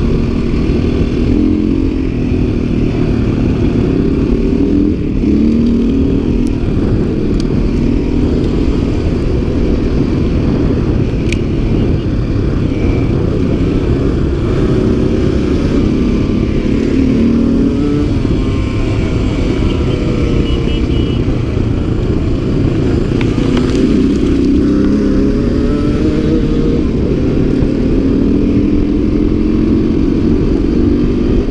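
Dirt bike engine running under way, its pitch rising and falling repeatedly as the throttle opens and closes and the gears change, heard close from a helmet-mounted camera.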